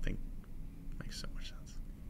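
A man's voice finishing a word, then a pause holding only faint, quiet voice sounds.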